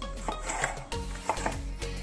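Kitchen knife cutting a red bell pepper on a bamboo cutting board, the blade knocking on the wood several times at an uneven pace, over background music.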